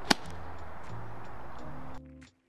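A single sharp click of a golf club striking the ball on an approach shot, just after the start, over steady background music.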